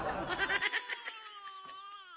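A man's drawn-out moan of pain that slowly falls and fades, acted as labour pains.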